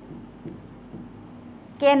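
Pen writing on a teaching board: faint scratching strokes as letters are drawn, with a spoken word starting near the end.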